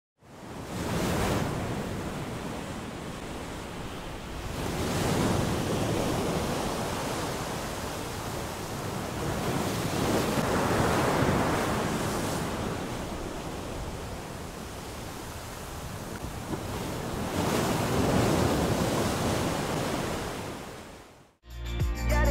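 Sea surf and wind, a steady rush that swells and eases in slow surges a few seconds apart, then stops suddenly near the end.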